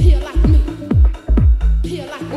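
Electronic dance track played in a DJ mix: a four-on-the-floor kick drum about twice a second over a bass line. The kick drops out right at the end.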